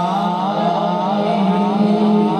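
A man's voice singing a long, wavering melismatic line of a naat over a steady low drone.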